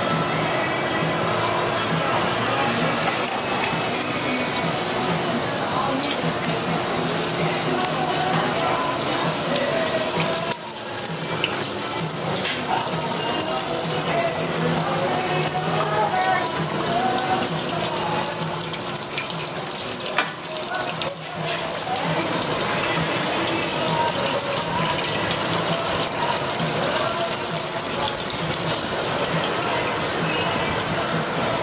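Steady rushing roar of a glass studio's gas-fired glory hole and furnace burners, with indistinct voices faintly in the background. The roar dips briefly twice, about a third and two-thirds of the way in.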